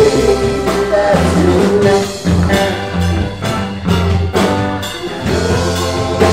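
Live rock band playing, with electric guitar, bass, keyboard and a steady drum beat under a singing voice.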